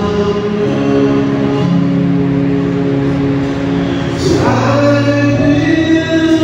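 Music with singing: long held sung notes over accompaniment, and a new phrase starts about four seconds in.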